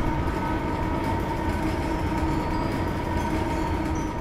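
A steady low rumbling noise with a few faint held tones, slowly fading toward the end.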